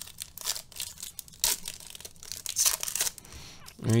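Foil wrappers of Bowman baseball card packs and their box packaging crinkling and crackling in irregular bursts as they are handled, with a louder crackle about a second and a half in and another near three seconds.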